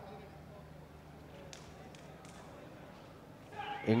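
Faint indoor sports-hall ambience during a kabaddi raid, with two short faint squeaks or knocks from players' feet on the mat, about a third and halfway through. A man's commentary voice comes in near the end.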